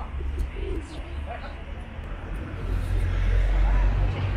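Feral pigeons cooing over a steady low outdoor rumble that gets louder about two and a half seconds in.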